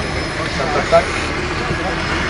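Men's voices talking in short, indistinct fragments over a steady background noise outdoors.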